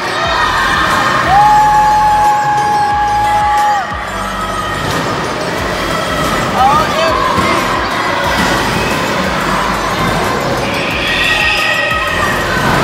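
Loud music playing at a spinning disc amusement ride, with riders' voices and short calls over it. A single steady high tone sounds from just over a second in and holds for about two and a half seconds.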